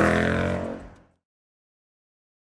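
A car engine accelerating, its pitch rising steadily, then fading out about a second in to complete silence.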